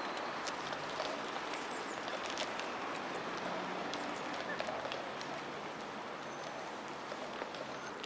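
Steady rushing noise of a bicycle ride on a paved park path: wind and tyre rumble, with a few light clicks scattered through.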